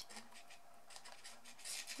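Faint rubbing and rustling of card stock as hands thread a round elastic through small punched holes in a laminated paper case.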